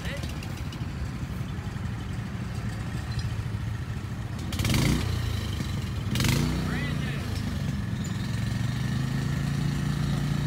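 An engine running at a steady low pitch, its note stepping up slightly about seven seconds in, with two brief rushing noise bursts near the middle.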